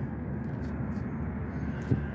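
Steady low background noise of an outdoor city street, with a brief knock near the end.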